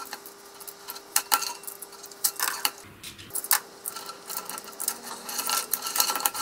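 Black plastic cable drag chain links clicking and rattling against each other as the chain is freed of packing tape and lifted, in an irregular run of sharp clicks.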